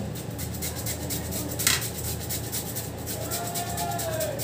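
Hand-held vegetable peeler scraping in quick repeated strokes along a carrot over a plate, with one sharp click a little before halfway.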